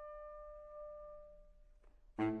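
Baritone saxophone (Selmer Super Action 80 Series II) holding one long note that fades away over about a second and a half, followed by a short breathy noise near the end.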